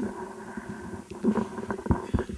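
A table microphone being grabbed and pulled into place, giving low bumps and rumbling handling noise through the PA, with a sharp knock at the start and another near the end over a faint steady hum.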